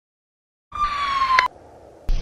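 Silence for most of the first second at the gap between two songs. Then the next recording opens with an electronic whistle-like tone that falls slightly in pitch for under a second and ends in a sharp click, followed by a low hiss.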